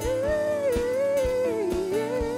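A male singer holding one long, wavering sung note into a microphone, sliding down near the end, over a live band with steady drum beats.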